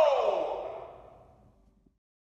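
A voice calling out "Go!" to end a game countdown, its pitch sliding down as it echoes and fades away over about a second and a half.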